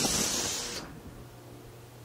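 Sudden hiss of compressed air from an automatic test panel spray machine, fading away over about a second, with a faint low hum from the machine continuing beneath.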